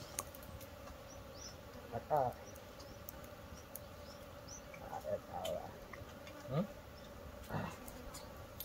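Bees humming steadily, with short bursts of men's voices calling a few times over it.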